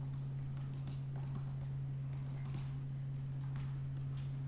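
Typing on a computer keyboard: irregular light key clicks as a line of code is entered, over a steady low hum.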